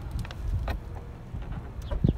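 Low, steady outdoor rumble, like wind or handling noise on a phone microphone, with a few faint clicks.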